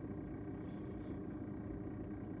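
Faint, steady low background hum inside a parked car's cabin, with no distinct events.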